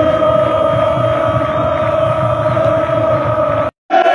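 Stadium crowd of football supporters chanting, holding one long sung note over the general crowd noise. The sound drops out briefly just before the end.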